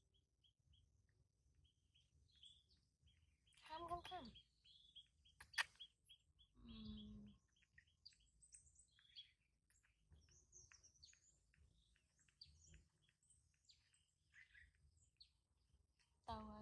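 Faint bird chirps: short, high calls repeated throughout, over near silence. A brief voice sound comes about four seconds in and another near seven seconds, with a single sharp click between them.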